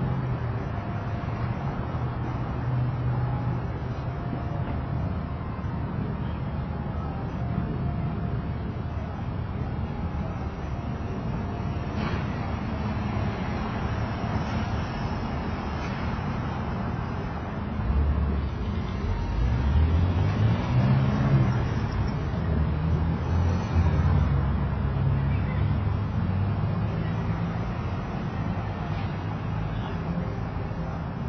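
Street traffic rumbling steadily, with a louder vehicle passing about two-thirds of the way through, its engine note rising in pitch.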